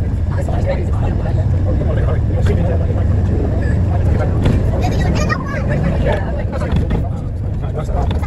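Steady low engine rumble heard from on board a moving bus in city traffic, with people talking indistinctly over it.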